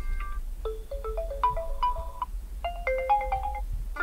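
Built-in Oppo Reno5 Z ringtones previewing from the phone's speaker: short melodies of separate notes. Each preview stops abruptly and a new one starts as the next ringtone in the list is tapped, with breaks about half a second and two and a half seconds in.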